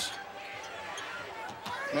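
A basketball being dribbled on a hardwood court over the murmur of an arena crowd.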